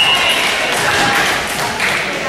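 A referee's whistle blows briefly as the rally ends, then players cheer and shout over the echo of a large gymnasium.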